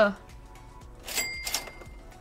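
Two quick swishes of a glossy chromium trading card being slid off the card behind it, about a second in, with a thin high ring lingering under them, over soft background music.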